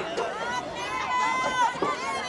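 Several high-pitched voices yelling and calling out over one another in long, drawn-out shouts, typical of young players and spectators at a youth football game before the snap.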